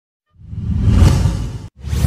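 A loud whoosh sound effect swelling up and dying away, then a second whoosh starting near the end.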